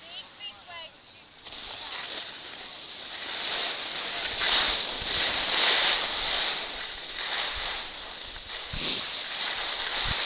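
Skis sliding and scraping over packed snow, with wind rushing on the microphone, the hiss starting about a second and a half in and rising and falling in surges. Faint voices are heard briefly at the start.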